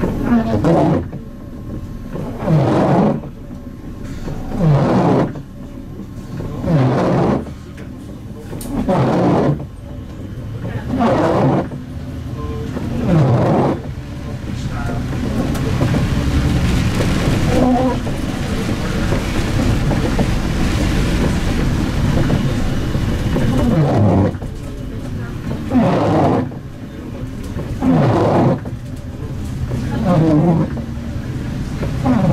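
Bus windscreen wiper groaning across wet glass, one drawn-out groan that falls in pitch about every two seconds. Between the groans the CNG bus's engine and tyres are heard, with a steadier rush of driving noise for several seconds in the middle.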